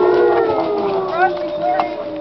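Several wolves howling together: long, overlapping calls that slide slowly down in pitch, with a few short, higher rising calls about a second in.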